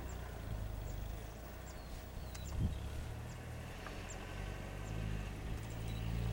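Outdoor ambience: a steady low rumble of breeze, with faint, short, high bird chirps about once a second and a single soft low thump about two and a half seconds in.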